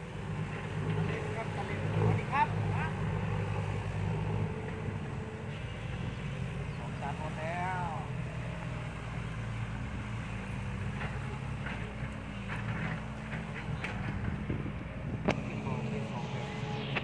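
Diesel engine of a small dump truck labouring in second gear as it climbs a dirt ramp out of a pit, heard from a distance as a steady low drone. The drone is strongest in the first few seconds and then eases.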